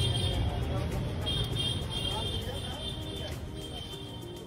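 Low steady rumble of background traffic with faint, indistinct voices, fading gradually across the few seconds.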